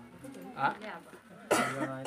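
A man coughs once, sudden and loud, about one and a half seconds in, after a low voice speaking.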